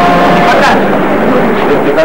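Men's voices in casual conversation, talking over a steady background noise.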